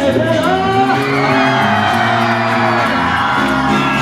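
Live band performing a song: several voices singing over acoustic guitars and electric bass, with a long sung note held through the middle.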